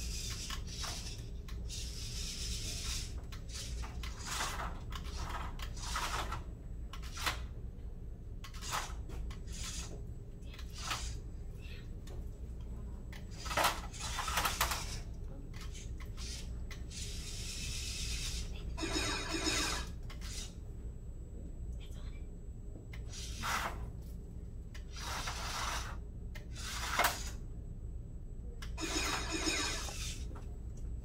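A small plastic VEX IQ competition robot being driven across its field, its parts knocking, clicking and scraping against the plastic risers in short irregular bursts, with a couple of longer rattles near the two-thirds mark and near the end. All this sits over a steady low room hum.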